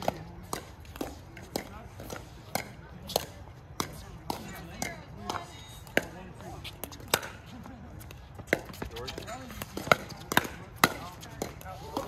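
Pickleball paddles striking a hollow plastic pickleball during rallies: sharp, irregular pops about one to two a second.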